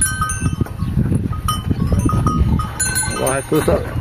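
Cattle in a corral: a bell clanking irregularly among knocks and shuffling, with a short call near the end.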